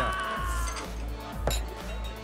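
Background bar music with a steady bass beat, over a drawn-out voice falling in pitch at the start. About a second and a half in comes a single sharp knock: a glass of juice set down on the bar counter.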